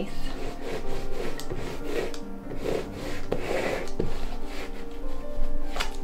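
A small paint roller rolling paint across a canvas, soft rubbing strokes that come and go, over steady background music.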